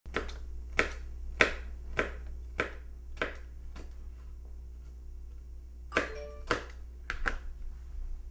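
Kitchen knife chopping red bell pepper on a cutting board: a regular stroke about every 0.6 s, a pause, then a few more cuts near the end. A steady low hum runs underneath.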